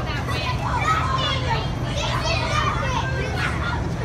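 Children yelling and laughing inside a hurricane-simulator capsule over the steady low rush of its wind machine.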